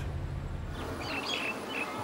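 Outdoor ambience with several short, high bird chirps in the middle, over a low rumble that fades out about a second in.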